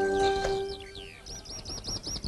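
Held music tones fading out, then birds chirping: a few downward-sliding calls, then a quick run of repeated arched chirps in the second half.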